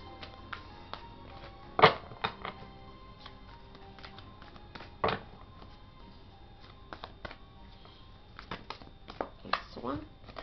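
Tarot cards being shuffled and handled: scattered soft clicks and riffles, with sharper snaps about two and five seconds in and a quick run of clicks near the end.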